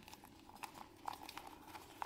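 Faint rustling and a few small clicks of hands handling a wiring harness and its connectors inside a rubber wire boot.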